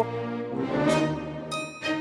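Orchestral background music with brass, holding a steady chord that stops just before the end.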